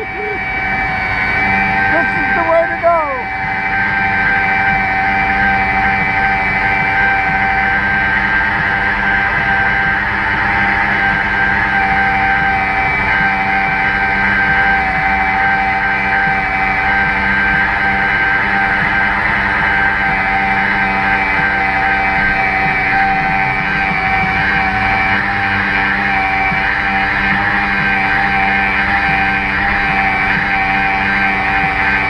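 Anchor Maxx electric capstan winch running steadily under load as it hauls in anchor rope, a constant motor whine. A man laughs in the first few seconds.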